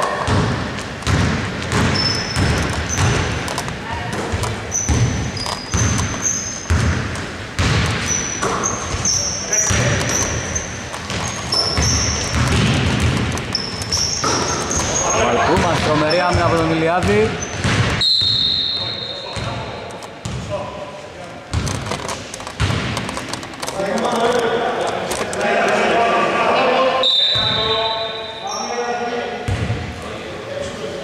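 Basketball being dribbled on a hardwood gym floor, repeated bounces echoing in the large hall, with short high squeaks through the first half of the play.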